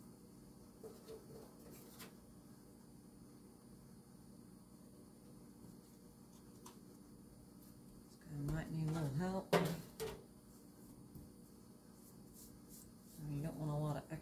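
Quiet room tone with faint handling sounds as bread dough is shaped by hand on a silicone mat. About eight seconds in, a voice speaks briefly with a single sharp knock in the middle of it, and the voice starts again near the end.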